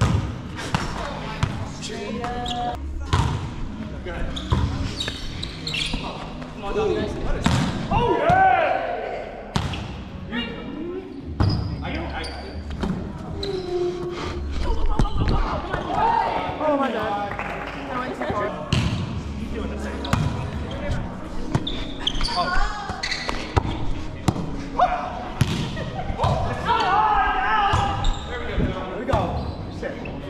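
Volleyball play in a large gym: a ball struck by hands and arms and bouncing on a hardwood floor, many sharp slaps and thuds at irregular intervals, mixed with players' shouts and calls.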